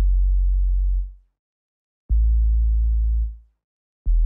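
Two deep synthesized bass notes, one at the start and one about two seconds in, each held steady for about a second before fading out.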